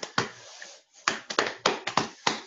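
Two quick runs of sharp, irregular taps close to the microphone, about five or six a second, with a brief soft hiss between them.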